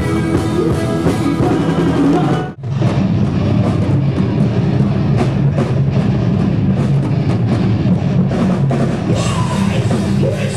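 Loud live rock band: electric guitars, drums and singing. About two and a half seconds in the sound cuts out for a moment and a heavier metal song takes over, with rapid drum hits over low guitar.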